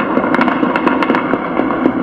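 ShotSpotter acoustic-sensor recording of a gunfight played back: a rapid, irregular string of many gunshots over a steady hiss, from an incident the system logged as 15 rounds with multiple shooters.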